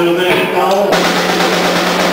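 Live rock band with drums and cymbals played loudly and a voice over them. About a second in, a dense cymbal wash takes over above a steady low bass note.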